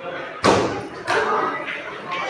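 A single sharp thump about half a second in, followed by people talking.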